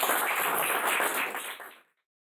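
An audience clapping and applauding in a room, a dense patter of many hands that fades away quickly near the end.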